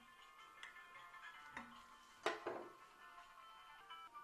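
Soft background music with high held notes, over which a kitchen knife clicks against a ceramic plate while slicing through a stuffed meat roll. The sharpest click, a little over two seconds in, is the loudest sound.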